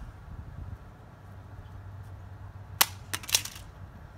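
Samsung Galaxy Ace 4 smartphone dropped back-down onto a concrete driveway: one sharp crack about three seconds in, then a quick clatter of smaller hits as it bounces and its back cover and battery come off.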